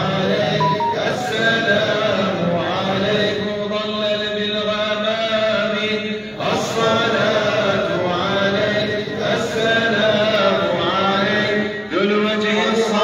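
Men chanting an Islamic devotional chant (salawat) in long, drawn-out phrases over a steady low held note, with a brief break about six seconds in.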